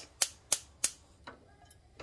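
Gas hob's spark igniter clicking: three sharp clicks about a third of a second apart, then a fainter one about a second in.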